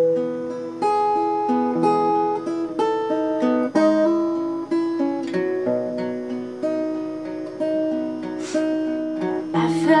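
Solo acoustic guitar picking a slow intro of single notes and broken chords, each note ringing on as the next is played. A woman's singing comes in right at the end.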